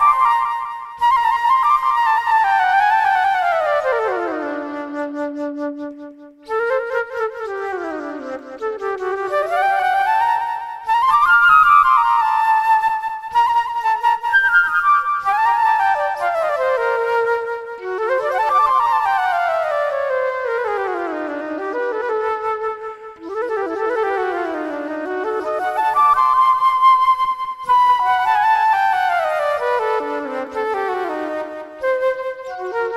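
Solo flute improvising in phrases of quick, mostly descending runs, with short breaks for breath between phrases.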